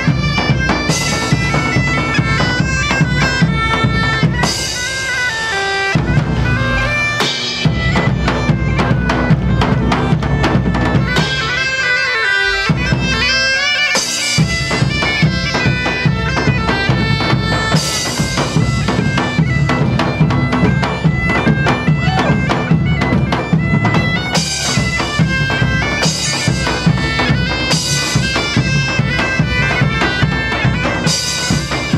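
German bagpipes playing a lively melody over their steady drones, backed by big drums. The drums drop out briefly twice, about five seconds in and again around thirteen seconds in, while the pipes play on.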